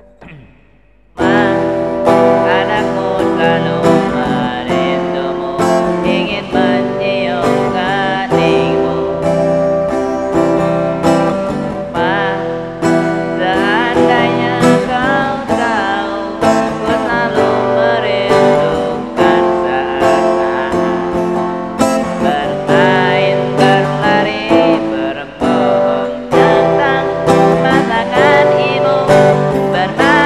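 Acoustic guitar strummed in steady chords with a man singing along, starting abruptly about a second in after a brief quiet moment.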